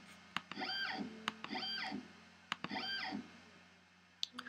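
X-Carve CNC router's Z-axis stepper motor jogging the bit down in 0.1-inch steps: three short whines, each rising in pitch, holding, then falling as the axis speeds up and slows down. Each whine follows a sharp mouse click.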